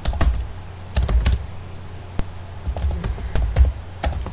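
Computer keyboard typing: short irregular runs of keystroke clicks with brief pauses between them, as a line of text is typed.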